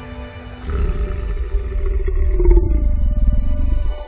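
Dramatic film-trailer soundtrack: a deep rumbling swell that builds about a second in, with a held low tone that drops away near the three-second mark, cutting off abruptly at the end.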